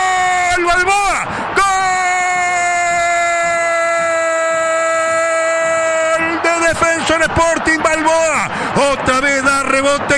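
Radio football commentator's long held goal cry, "gooool", one sustained shout lasting about six seconds with a quick breath about a second in, its pitch sinking slightly. Rapid excited commentary follows.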